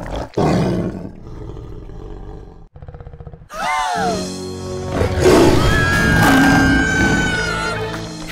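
Cartoon animal roaring with dramatic music: a low rumbling growl, then a falling cry about three and a half seconds in. The music then swells with held notes near the end.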